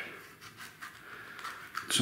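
Faint handling noise: a few light clicks and rustles.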